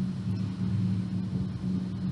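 A steady low background hum in a pause between spoken sentences, with no other distinct sound.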